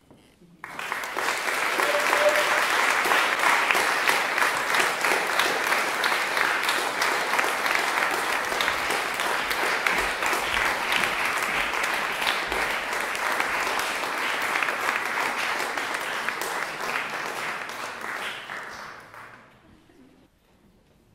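Audience applauding: dense clapping begins about a second in, holds steady, and fades out near the end.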